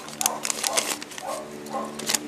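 Lined notebook paper being unfolded and crinkled by hand: an irregular run of crackles and rustles.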